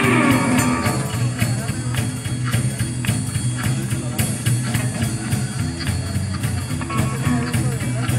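A live blues band playing: a drum kit keeps a steady beat with cymbals, over an upright bass and an electric guitar.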